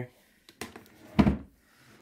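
A cabinet drawer on metal slides being pushed shut: a light click about half a second in, then a thump about a second in as it closes.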